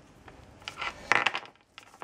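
Faint handling of cables and plastic connectors as one cable is plugged onto another: a few soft clicks and a short rustle about a second in.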